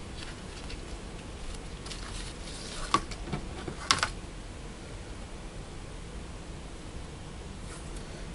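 Paper and tape being handled on a desk: faint rustling, then two sharp knocks about three and four seconds in, over a steady low hiss.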